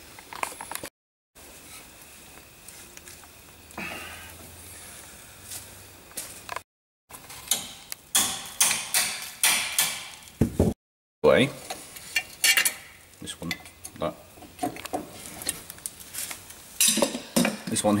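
Metal tools and steel parts clinking and clattering while a socket wrench on a long extension bar works the bolts off a Land Rover front axle swivel housing. The sound comes in short stretches, broken by three brief silent gaps, and the clatter is busiest in the second half.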